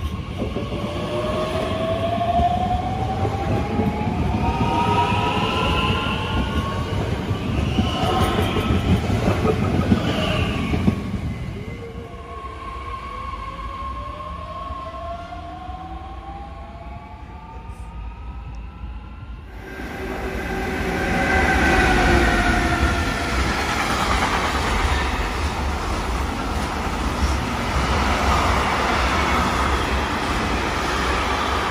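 DB Class 442 Talent 2 electric multiple units accelerating, their traction drives giving a whine that rises in pitch over rolling rumble, twice in turn. About twenty seconds in the sound changes abruptly to a long freight train of container and trailer wagons rolling past steadily.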